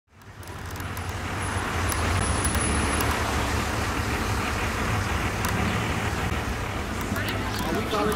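Steady outdoor road traffic noise from cars, fading in from silence over the first second. Voices of people start to come through near the end.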